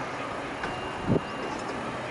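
Steady background hum and hiss of a railway station platform beside a standing train, with a faint high whine in the middle and one brief low sound a little past halfway.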